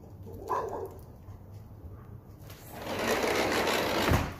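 Sliding patio door rumbling along its track for the last second and a half or so, a dense rattling roll.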